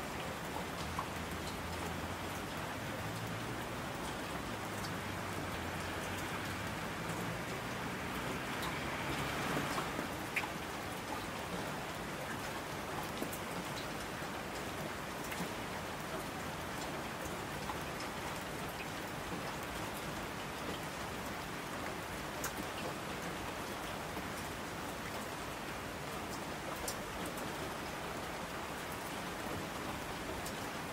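Steady, heavy rain falling on surfaces, with scattered sharp drop ticks and a brief swell in intensity about nine seconds in. A faint low rumble sits under it for the first several seconds, then fades.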